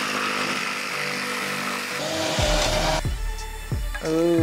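Jigsaw cutting through plywood over background music. The sawing stops about three seconds in, and the music carries on with a deep bass.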